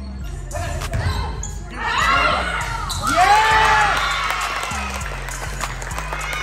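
A background music beat runs under volleyball play in a large gym: sharp ball strikes in the first two seconds, then voices shouting and cheering from about two seconds in as the point is won.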